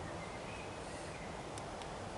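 Quiet outdoor background ambience: a steady hiss of noise, with a faint thin high note early on and two small ticks near the end.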